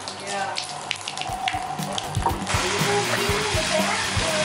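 Bathtub faucet running, the water splashing over a hand held under the spout. About two and a half seconds in, the flow is turned up to a strong gush and the hiss grows louder.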